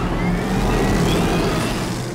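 Tumbler Batmobile's engine running loud, a deep rumble under a rising whine.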